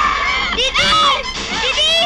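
A young girl's high-pitched screams and cries, in a wavering cluster about half a second in and again near the end, with other voices shouting around her.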